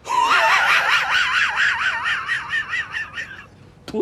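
A woman's long, high-pitched wavering shriek, her voice wobbling rapidly up and down in pitch and climbing, then breaking off after about three and a half seconds.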